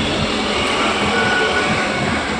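Steady road traffic noise, an even rush without a break.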